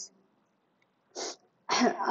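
A woman's brief, noisy burst of breath about a second in, then another noisy breath that runs straight into speech near the end.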